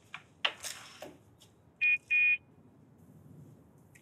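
Two short electronic horn beeps, the second a little longer, from a toy remote-control car, after a brief rushing noise about half a second in.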